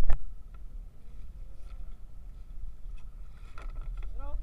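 Low steady rumble of a small outrigger boat rocking at sea, with a sharp knock right at the start and a few faint clicks.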